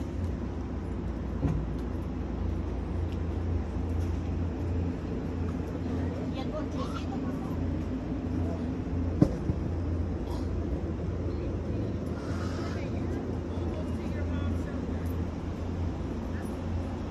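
Outdoor night ambience on a walk: a steady low hum and rumble with faint distant voices. One sharp click comes about nine seconds in.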